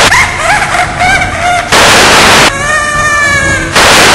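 Loud bursts of TV static hiss, three times (at the start, in the middle and at the end), cutting between a voice that slides up and down in pitch and then holds a long, slightly falling note.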